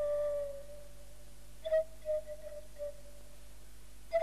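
Slow, soft solo flute melody from the film score: one held note at the start, then a few shorter, softer notes in the middle.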